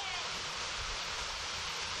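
Steady rush of a small creek running over a flat rock ledge and spilling over a waterfall.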